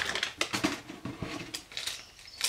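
A white shopping bag rustling and crinkling as hands rummage in it and pull out a purchase: a run of quick, irregular crackles.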